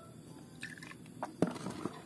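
Faint scattered clicks and light knocks from a motorcycle cylinder head being handled, the sharpest about a second and a half in.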